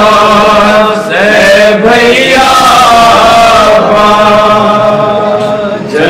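Men's voices chanting a noha, a Shia mourning lament, unaccompanied, in long held melodic lines with a short break about a second in and another near the end.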